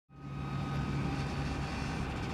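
Steady hum of street traffic, cars and a motorcycle, fading in quickly at the start, with a low engine drone.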